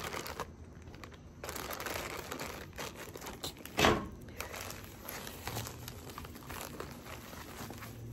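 Packaging rustling and crinkling as items are dug out of a mail package, with one louder, sharper crackle a little before the midpoint.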